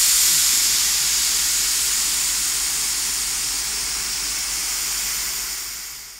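Steam locomotive letting off steam: a steady hiss that slowly eases and fades away at the end.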